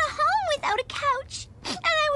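A young cartoon girl's voice wailing and sobbing in short cries that rise and fall in pitch.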